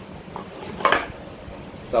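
Hard plastic speed-stacking cups clacking together as a pyramid is slid down into a nested stack, with one sharp clack about a second in.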